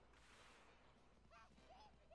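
Near silence, with a few faint short pitched calls in the second half.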